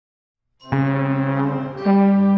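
Slide trombone starting about half a second in with a loud held low note, then moving up to a higher held note near the end.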